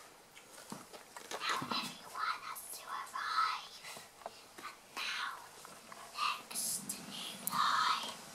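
A child whispering in short breathy phrases, too soft to make out, with a few light knocks as plush toys and props are handled on a wooden floor.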